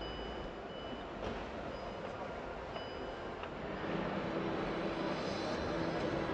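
Busy exhibition-hall background din, heard from inside a parked car, with a few short high electronic beeps in the first half. The din grows louder a few seconds in.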